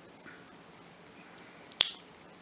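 Quiet room tone broken near the end by a single sharp click, a short snap.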